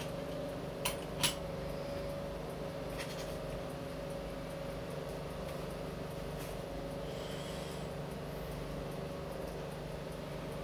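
A steady low electrical hum with two light clicks about a second in.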